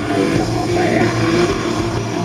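A metal band playing live through a large stage PA, distorted electric guitars over drums, heard from the crowd. The music is loud and continuous.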